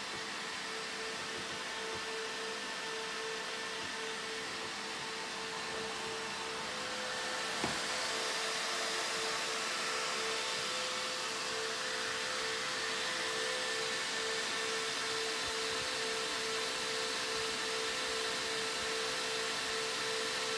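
High-speed server fans running inside a desktop PC case: a steady rushing noise with a steady whining tone, a little louder from about seven seconds in. The fans are running at full speed, 77 to 90 decibels by the owner's reckoning.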